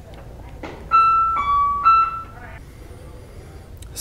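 A brief three-note electronic chime about a second in, going high, lower, then high again.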